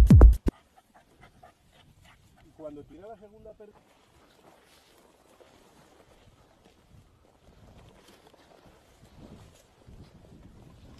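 Electronic music cuts off in the first half-second. Then faint rustling of footsteps through dry scrub, with a brief pitched call about three seconds in.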